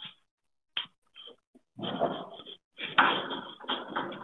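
A chalkboard duster rubbed across a chalkboard, wiping off chalk writing in irregular scraping strokes that begin about two seconds in, after a couple of light taps.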